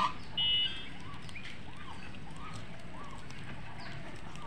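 Domestic geese feeding on grass, giving many short, soft repeated calls. Near the start a sharper call is followed by a brief high, steady whistle-like tone.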